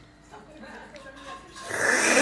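A man noisily slurping a forkful of sauced tagliatelle into his mouth, a long hissing suck that starts near the end.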